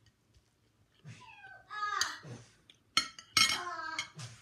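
Metal spoon and fork clinking and scraping on a ceramic plate, with two high cries falling in pitch, one about a second in and a louder one near the end.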